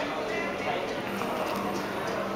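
Background chatter of a crowd in a hall, with a steady low hum and scattered light taps.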